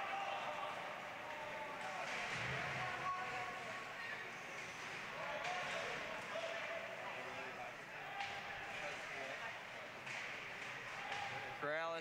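Ice hockey rink ambience during live play: indistinct voices of players and spectators over the scrape of skates on ice, with occasional knocks of sticks and puck.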